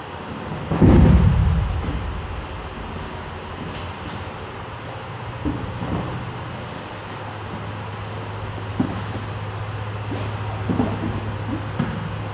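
An aikido partner thrown with a hip throw (koshi-nage) lands heavily on the practice mats about a second in with one loud, deep thud. After it come a few lighter knocks and thumps of bodies and bare feet on the mats over a steady low hum.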